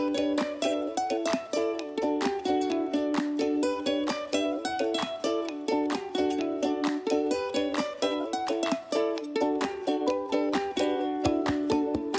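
Background music: a quick, light tune on plucked strings, with many short notes in a steady rhythm.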